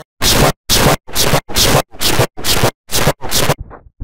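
A short looped speech sample mangled by digital effects into harsh, loud noise bursts, seven of them at about two a second. Near the end the bursts turn fainter and duller.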